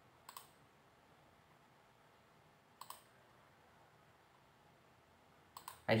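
Computer mouse button clicks: three short double clicks, each a quick press-and-release pair, spread across otherwise near-silent room tone.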